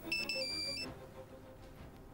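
Mobile phone ringtone: a short electronic melody of high beeping tones that stops a little under a second in, over soft background music.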